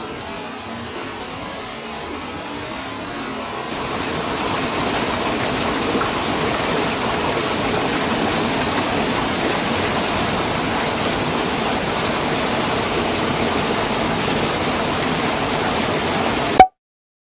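Steady rush of flowing water, growing louder about four seconds in and then holding steady.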